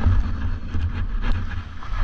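Wind buffeting a GoPro Hero 8's microphone during a fast ski descent, a heavy low rumble under the steady hiss and scrape of 4FRNT Devastator skis on snow, with scattered small clicks.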